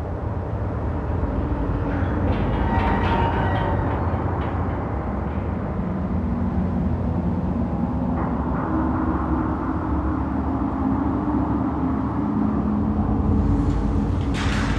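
A steady low rumble with sustained low droning tones that grow stronger about eight seconds in.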